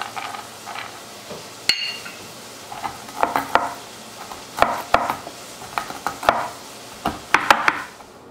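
Walnuts being crushed under a wooden rolling pin on a wooden cutting board: a single sharp click, then irregular cracks and knocks in clusters from about three seconds in.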